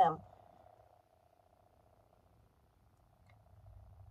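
A spoken word ends right at the start, then near silence inside a car with only a faint steady hum.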